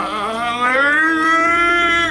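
A man's long mock-sobbing wail, made with a chocolate bar clenched in his teeth. It rises in pitch over the first second, then holds, and breaks off at the end.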